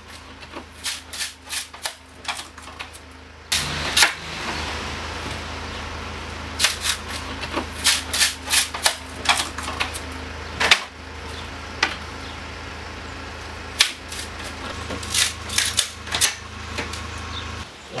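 Irregular sharp wooden clacks and knocks of thin split wooden shakes being handled and knocked together by hand, over a steady low hum.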